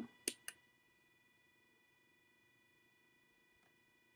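Two quick clicks from a small tactile push-button switch on a breadboard, pressed and released to step the CPU fan's speed up, followed by near silence with a faint steady hum.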